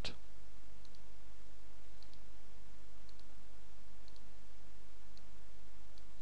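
Faint double clicks about once a second, five in all, over a steady low hum and hiss.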